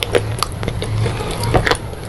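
Close-miked chewing of a crunchy, crumbly food: irregular sharp crackles and clicks from the mouth, over a low steady hum.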